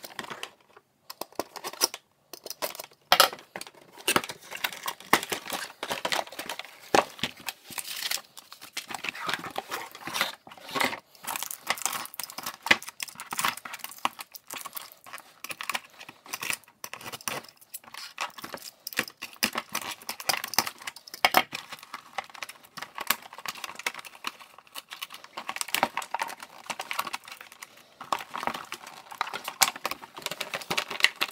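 Toy packaging being taken apart by hand: cardboard box and insert handled, plastic wrap and clear tape crinkling and tearing, and twist ties pulled loose, as a steady run of irregular rustles and small clicks.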